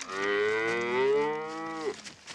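A cow mooing: one long moo of nearly two seconds, steady in pitch, dropping at the very end before it stops.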